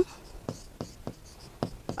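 Marker pen writing on a board: a quiet string of short, irregular taps and scratches as each stroke is made.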